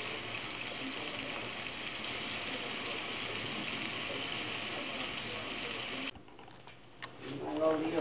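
Sliced hot dog and salami sizzling in hot oil in a nonstick frying pan, a steady sizzle that cuts off suddenly about six seconds in.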